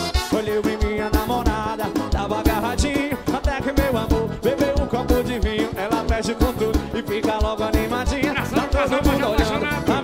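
Live forró band playing an instrumental passage with no vocals: wavering melody lines from the band's accordion and horns over a steady, driving drum beat.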